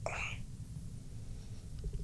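A pause in conversation: a faint breath in the first half-second, then only a low steady hum of room tone.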